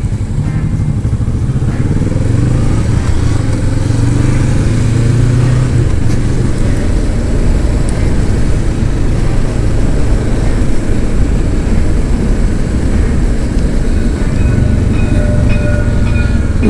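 Kawasaki Vulcan S 650's parallel-twin engine pulling away from a standstill, its pitch climbing through the gears in the first few seconds, then running steadily at speed under continuous wind rush on the onboard camera.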